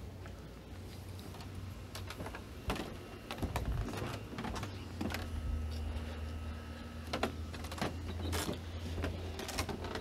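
Horror film soundtrack playing faintly in the background: a low steady drone that fades out about eight seconds in, a few held high tones in the middle, and scattered clicks and knocks.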